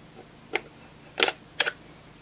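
Three sharp clicks from a small break-over SMA torque wrench being worked on an SMA connector, one about half a second in and two close together a little after a second.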